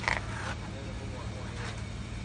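Steady low mechanical hum, with a brief higher-pitched sound just after the start.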